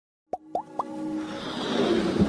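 Sound effects of an animated logo intro: three quick plops, each rising in pitch, then a swelling whoosh that grows steadily louder over a held low tone.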